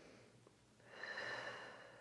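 A person's faint breath: one soft exhale of about a second, starting near the middle and fading out, taken while holding a lying spinal-twist stretch.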